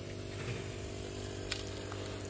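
Turk Elektrik NTU-150MT refrigerator compressor running with a steady hum, freed from seizure and started through its relay with start and run capacitors, drawing about 0.7 A. One small click about a second and a half in.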